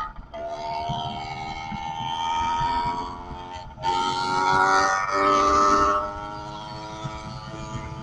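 110cc two-stroke bicycle engine running under throttle while riding, its pitch climbing steadily as it gathers speed. It cuts out for a moment just before four seconds, comes back louder for about two seconds with a brief dip in the middle, then settles to a steadier, quieter drone.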